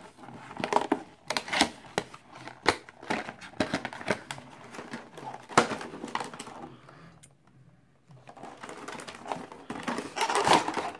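Cardboard packaging being opened by hand: irregular rustling, scraping and sharp clicks and taps as the box flap is pulled open and the inner card-and-plastic tray slides out. The sounds drop away briefly about seven seconds in, then resume.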